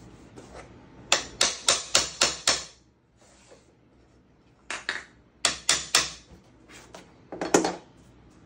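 Hammer tapping on a flooring installation tool to knock SPC vinyl click-lock planks together so the joint locks. It comes as a quick run of about six sharp knocks about a second in, a second run of about five a few seconds later, and a couple more near the end.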